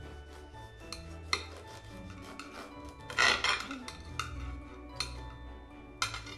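A knife sawing through a crusty loaf of bread on a ceramic plate, with a louder scraping stretch about halfway through and a couple of sharp clicks of the blade against the plate.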